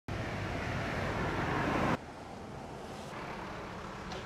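Street traffic noise, a steady rumble and hiss of passing road vehicles. It is louder for the first two seconds, then drops abruptly to a quieter steady background about two seconds in.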